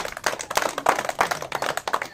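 A group of children clapping their hands: many quick, uneven claps overlapping.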